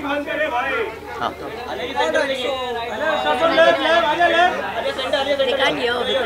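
Several people talking over one another at once: a dense babble of overlapping voices.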